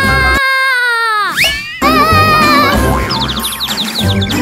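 Cartoon sound effects over bouncy background music. The music drops out under a long downward-gliding boing tone that ends in a quick upward swoop, then the music returns, and near the end rapid high twittering chirps give a dizzy, seeing-stars effect.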